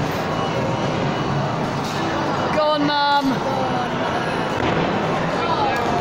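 Steady din of a busy amusement arcade, with a short raised voice about halfway through.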